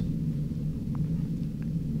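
A steady low rumble of room background noise, with two faint ticks in the middle.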